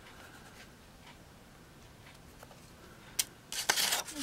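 Handling noise from a leather knife sheath and other items being moved by hand. A faint quiet stretch is followed by a single click about three seconds in, then a short burst of rustling and rubbing near the end.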